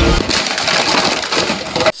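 Action-film trailer sound effects: a loud, dense rush of noise across the whole range, with a deep rumble that drops away just after the start.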